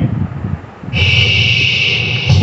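Movie Star 4.1 home theatre speaker system suddenly starting to play back audio about a second in, loud, with heavy bass.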